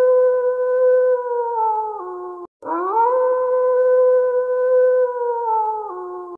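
A wolf howling: two long, steady howls. The first is already going and drops in pitch before breaking off about two and a half seconds in. The second rises straight after, holds level, and sinks in pitch near the end.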